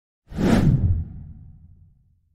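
Whoosh sound effect for an intro title. It swells up suddenly about a quarter second in, then fades away with a deep tail over the next second.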